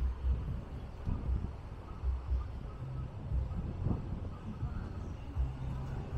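Wind buffeting the microphone: an uneven low rumble that rises and falls in gusts.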